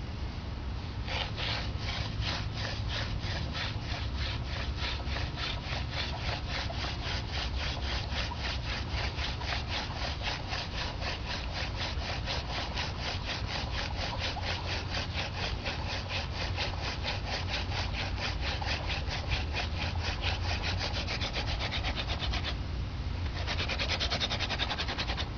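Hand-drill friction fire: a dog fennel spindle spun back and forth between gloved palms, grinding in the notch of a sabal palm hearth board with a fast, steady rhythmic rasp. The rasp stops briefly near the end as the hands go back to the top of the spindle, then starts again.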